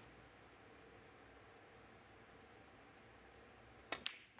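Hushed arena at near silence, then near the end a single sharp click as a snooker shot is struck.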